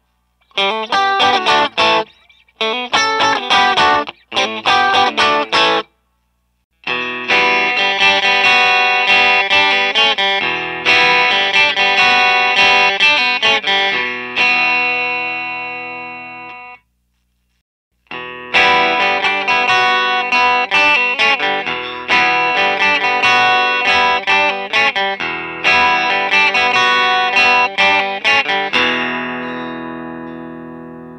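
Clean electric guitar tone samples, chords played in separate takes. First the 2022 Tom Anderson Drop Top on its bridge and middle pickups in a few short clips. Then the 2009 Suhr Carved Top on its middle pickup, ending in a chord that rings out. After a brief gap comes the Anderson again on its middle pickup, its last chord ringing out near the end.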